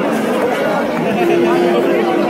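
Crowd chatter: many voices talking and calling out over each other, one of them drawn out for about a second past the middle.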